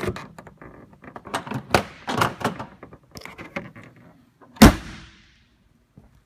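Hood of a 2014 Ford Mustang GT being closed: a run of light knocks and rattles as it is handled and lowered, then one loud slam about four and a half seconds in as it shuts, ringing briefly off the room.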